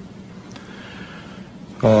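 A pause in a man's speech at a podium microphone: faint room noise with a soft rustle in the middle. His voice starts again near the end.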